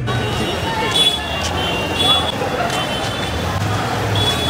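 Busy street ambience: a dense crowd's chatter mixed with traffic noise from vehicles moving through the crowd, with several short high-pitched tones sounding on and off.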